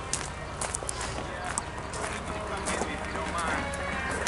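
Footsteps on gravel, a string of irregular light scuffs and clicks, with faint voices in the background.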